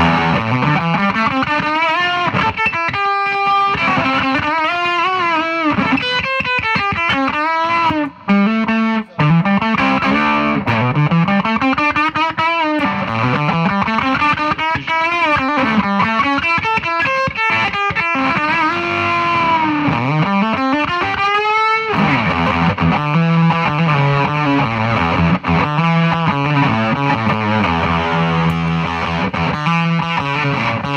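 Electric guitar played through a handmade LM386-based phantom octave-up fuzz pedal: a slammed, fuzzy overdrive with a distinct high octave note riding above the played pitch. Sweeping slides up and down the neck fill most of the time, then a steadier low riff takes over near the end.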